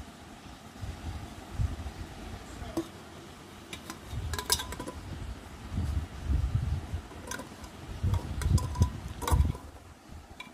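A steel tiffin container clinking and knocking against the metal pressure cooker as it is lowered in and set down on the small pot standing in water, with duller handling thumps between the clinks. The loudest clink comes near the end.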